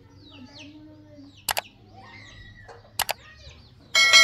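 Birds chirping faintly in the background, cut by two sharp double-click sound effects, one about a second and a half in and another about three seconds in, from an animated subscribe-button overlay.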